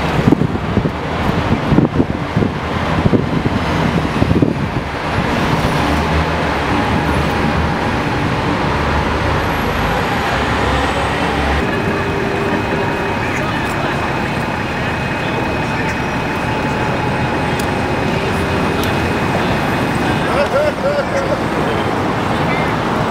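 City street traffic noise around an open-top double-decker tour bus. For the first half the noise is uneven and gusty, with wind buffeting the microphone on the moving top deck. About halfway through it turns into an even, steady traffic noise with a faint thin high whine.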